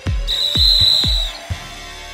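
Closing theme music: low drum beats about twice a second under a high steady tone held for about a second, then the music drops back quieter.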